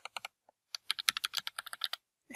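Typing on a computer keyboard: a few keystrokes at the start, then after a short pause a quick, steady run of keystrokes through the second half.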